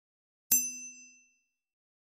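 A single bright metallic ding sound effect, struck once about half a second in and ringing out, fading away within about a second.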